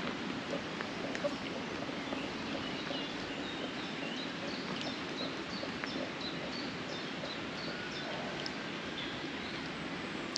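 Outdoor ambience: a steady background hiss with faint, short bird calls scattered throughout.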